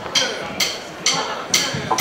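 Drummer's count-in: sharp, evenly spaced clicks about two a second, setting the tempo for the band.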